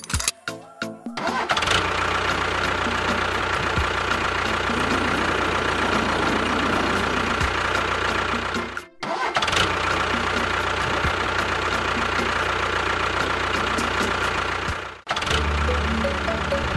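Tractor engine sound effect: a few sharp clicks, then the engine catches and runs steadily. It cuts out briefly about halfway, and stops near the end, where music takes over.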